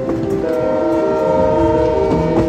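Steam locomotive whistle sounding one long, chord-like blast that starts about half a second in, over the rumble of the moving train.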